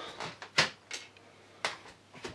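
Two short, sharp knocks about a second apart, the first louder, with a few faint clicks between them.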